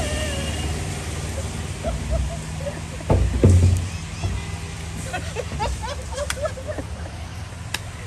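Road traffic rumbling past on a wet road. The loudest moment is a heavy vehicle passing close about three seconds in, its pitch dropping as it goes by.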